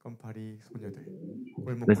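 Speech only: a voice speaking softly and haltingly, with louder speech resuming near the end.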